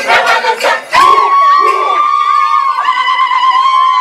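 Turkana dancers' group chant with a rhythmic beat. About a second in, it gives way to one long, high-pitched cry held for about three seconds, with other voices shouting over it.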